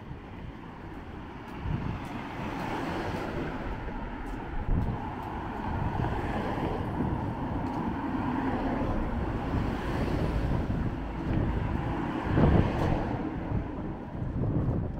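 A car driving past on the street, its tyre and engine noise swelling over several seconds and then easing. Wind buffets the microphone in low rumbles throughout, strongest near the end.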